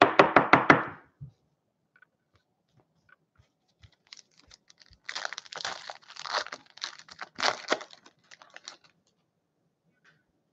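A quick run of sharp knocks in the first second. Then, a few seconds in, a foil hockey card pack is torn open and its wrapper crinkles for several seconds.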